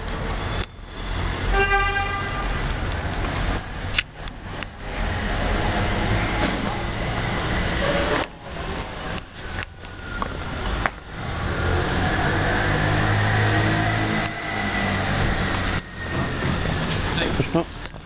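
City street traffic with a steady low rumble of passing vehicles and a short horn toot about two seconds in.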